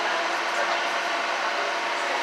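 Steady drone of a harbor tour boat under way: engine hum mixed with the rush of wind and water.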